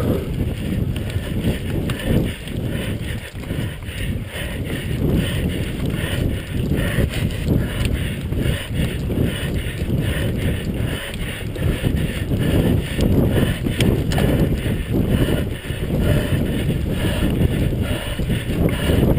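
Mountain bike ridden fast over a rough, bumpy forest trail, heard close up: a continuous low rumble of wind buffeting the microphone, with frequent knocks and rattles from the bike jolting over the ground.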